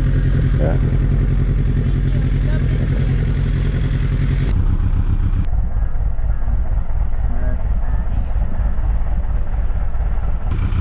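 Suzuki GSX-R sport bike engine idling steadily while the bike stands still.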